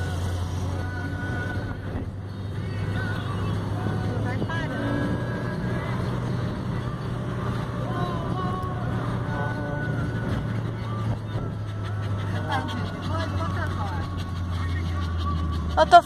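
Steady low drone of a car driving, heard from inside the cabin, with faint voices in the background.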